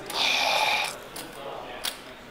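A person's loud breathy exhale, like a sigh, lasting under a second near the start, followed by a couple of short sharp clicks.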